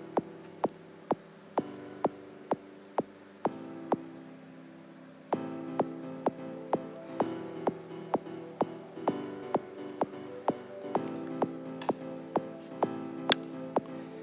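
Electronic song arrangement playing back from FL Studio at 128 BPM: a steady four-on-the-floor kick drum, about two beats a second, under sustained piano chords. The kick drops out for about two seconds; about five seconds in it returns, joined by a synth pad and a second piano-chord part, filling the sound out.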